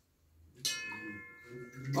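Large metal singing bowl struck once about half a second in, ringing with several high overtones that slowly fade.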